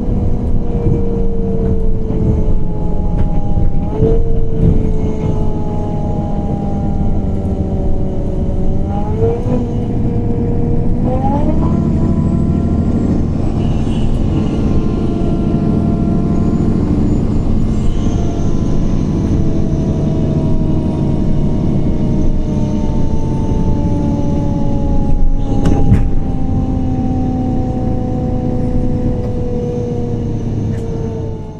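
Inside a moving 2014 MAN Lion's City CNG bus: its E2876 natural-gas engine and ZF Ecolife automatic transmission whining over a heavy low rumble. The whine falls steadily in pitch, steps sharply up twice about nine and eleven seconds in, then falls slowly again. There are a few knocks from the bus body, the loudest near the end.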